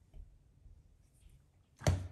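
Quiet room tone, then one sharp click about two seconds in.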